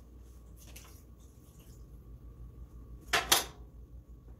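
Kitchen clatter of a saucepan and wooden spoon being handled on a gas stove, with two quick, loud knocks close together about three seconds in.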